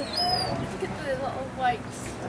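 Gulls calling: a run of short, squealing calls that glide up and down in pitch, crowding together in the second half.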